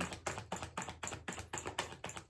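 Tarot deck shuffled by hand, the cards flicking against each other in quick, soft clicks, about six or seven a second.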